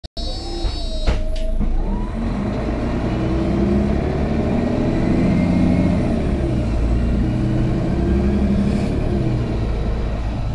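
The Mercedes-Benz OM457hLA diesel engine of a 2006 Citaro O530G articulated bus, heard from inside the passenger cabin, pulling under acceleration. Its pitch climbs, drops back and climbs again as the Voith automatic gearbox shifts up.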